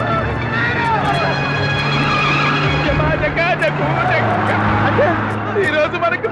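Jeep engine running with a steady drone that drops in pitch about four seconds in, under several men's excited shouting.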